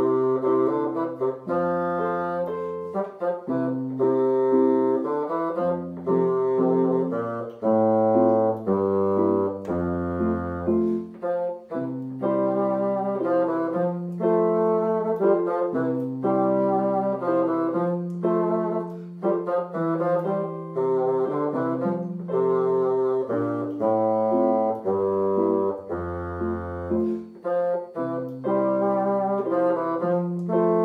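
Bassoon playing a simple graded solo melody of held notes, several of them low in the instrument's range, with piano-sound accompaniment from an electronic keyboard.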